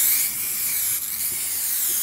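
Aerosol can of PlastiKote chalk spray paint spraying in one long, unbroken hiss.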